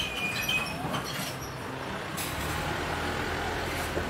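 Low, steady rumble of a motor vehicle engine running close by, with a wash of street traffic noise that swells about two seconds in.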